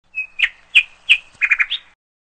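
Bird chirping: several sharp chirps about a third of a second apart, then a quick run of notes ending on a higher one, stopping suddenly.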